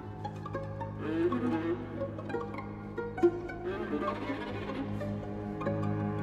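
A string orchestra plays a contemporary piece. Low cellos and double basses hold sustained notes under scattered pizzicato plucks and short figures in the higher strings, with one sharp accent a little past three seconds in.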